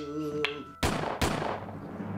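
A man's sung note trails off, then two loud, sharp cracks about half a second apart, each with an echoing tail.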